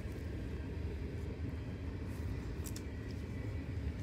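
Low, steady rumble of a passing train, with a couple of faint clicks from cards being handled near the middle.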